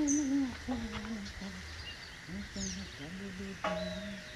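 People talking at a distance, with birds giving short high chirps over the voices.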